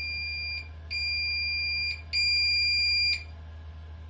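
Bosch VarioPerfect Serie 8 washing machine's signal buzzer sounding three steady, high-pitched tones of about a second each, each louder than the last. The buzzer volume is being stepped up one level at a time.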